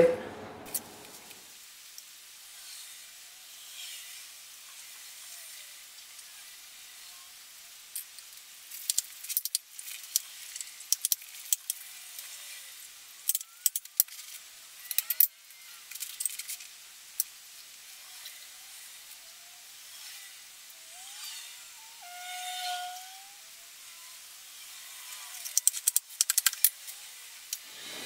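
Faint, thin handling noise of cooked pumpkin skin being pulled off by hand on a wooden cutting board, with scattered clusters of clicks and taps. A short whistle-like tone slides up and then holds, a little past three-quarters of the way through.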